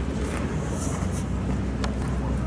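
Steady low rumble of outdoor background noise, with one sharp click near the end.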